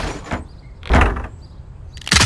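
Heavy slams of a plastic wheelie-bin lid, one about a second in, with the fading end of an earlier slam at the start.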